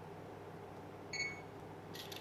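Sony Ericsson Xperia X10 camera phone giving one short, high electronic beep about a second in, its focus-confirmation tone, then a brief clicking shutter sound as the photo is taken near the end.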